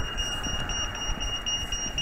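Rapid, evenly spaced high-pitched electronic beeping from a pedestrian crossing's audible signal, sounding while the traffic lights stand at red, over a low steady background rumble.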